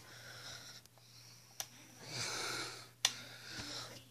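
Two sharp clicks about a second and a half apart from the on/off switch of a toy RC boat's remote control being flicked, with a soft breath between them.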